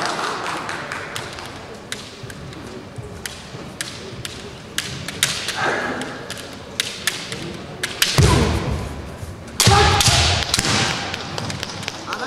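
Kendo bout: bamboo shinai clicking and clacking against each other many times as the fencers probe, with a loud burst of foot stamps on the wooden floor, strikes and shouts about eight seconds in and again about ten seconds in.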